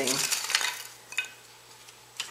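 Hands working inside a masonry stove's firebox among stacked kindling and paper: a soft rustle for about half a second, then a single light click about a second in, then quiet.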